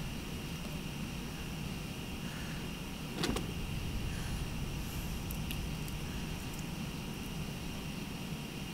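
Steady low rumbling background noise with a faint steady high whine, and a single sharp knock a little over three seconds in, with a few faint ticks after it.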